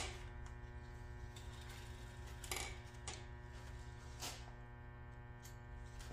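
Steady electrical hum or buzz, with a few faint scattered clicks as metal engine parts are handled.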